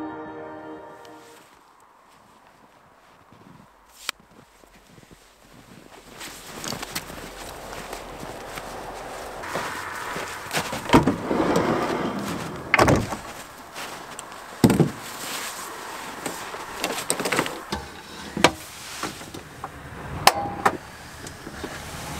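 Ambient music fades out, then after a quiet stretch come several sharp knocks and clunks of a Ford Transit Custom camper van's sliding side door and a tripod being handled, over a steady outdoor hiss.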